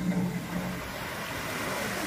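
Steady rush of water from a musical fountain's jets spraying up and falling back into the pool, as the show music dies away in the first second.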